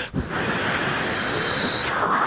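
A man imitating a jet aircraft with his voice into a microphone: a steady rushing roar with a high whine that sinks slightly, then sweeps sharply upward near the end.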